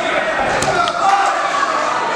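Voices calling out in an echoing hall around an amateur boxing ring, with two sharp knocks about half a second and a second in.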